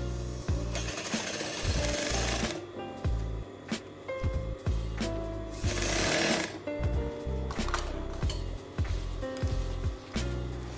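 Brother industrial lockstitch sewing machine stitching fabric in several short runs, starting and stopping as the fabric is guided, with a rapid mechanical hammering of the needle.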